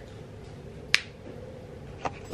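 A single short, sharp click about a second in as a small glass bottle is handled in the hands.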